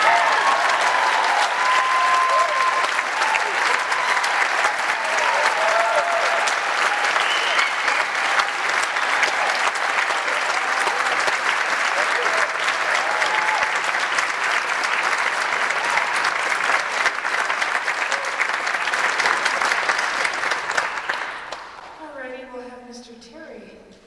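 Concert audience applauding, dense steady clapping with scattered cheers and calls, dying away near the end.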